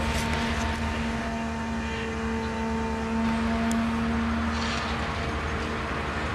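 Diesel power unit on the crane's crawler undercarriage running steadily: a low engine drone with a steady whine held over it.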